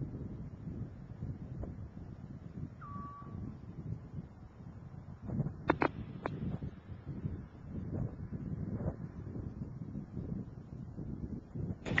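Low, steady rumbling roar, the distant sound of the Space Shuttle's rocket motors during ascent. A brief short tone sounds about three seconds in, and a few sharp clicks come around the middle.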